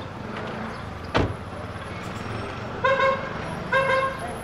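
Car running with a steady low rumble, a single sharp knock about a second in, then two short horn toots near the end.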